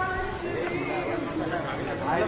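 Indistinct background chatter of several people talking in a café, over a low steady room hum.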